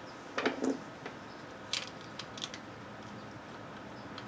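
A few light clicks and taps as the plastic and metal housing of a bullet IP camera is handled and the screws in its back are taken out.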